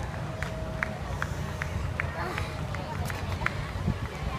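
A person laughing briefly over a steady low outdoor rumble, with light ticks recurring about twice a second.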